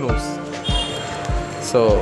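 Background music with a steady, thumping beat of about three beats every two seconds, under held tones and a sung melody line that rises near the end.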